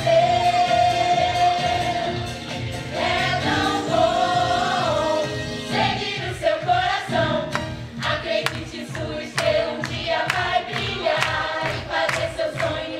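A group of voices singing together in a stage-musical number over musical accompaniment with a regular beat, the beat standing out more sharply in the second half.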